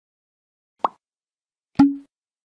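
Two short, sharp sound-effect hits of an animated title intro, about a second apart; the second is louder and trails off in a brief low hum.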